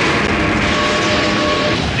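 Film sound effects of a large fiery explosion: a loud, continuous low rumble with a few thin held tones over it.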